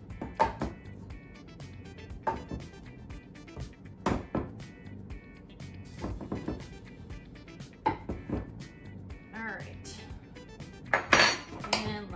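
Metal spoon scooping flour from a canister into a measuring cup, knocking and clinking against the cup and canister rim every second or two, loudest near the end. Music plays underneath.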